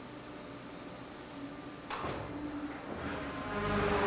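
A tannery fleshing machine, whose knife cylinder spins at 2000 rpm, shaves the flesh layer off a raw hide. It hums steadily at first, gives a sharp clack about two seconds in, then swells into a louder whirring hiss over the last second or so as it works on the hide.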